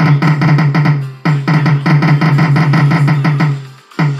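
Bass-boosted pop music: a fast run of repeated heavy bass and drum hits, breaking off briefly about a second in and again just before the end.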